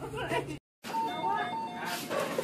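Voices talking, cut off by a brief silence; then a short electronic tune of alternating high and lower beeping notes plays over people talking.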